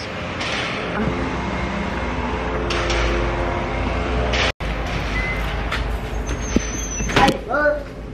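Steady outdoor ambient noise with a low rumble, picked up on a handheld phone microphone while walking across a parking lot; the sound cuts out for a moment about halfway through, and a short voice comes in near the end.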